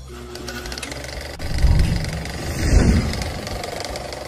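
Cinematic trailer-style sound design for an animated title logo: a dense noisy roar over a heavy low rumble, swelling loudest twice, about one and a half and about three seconds in.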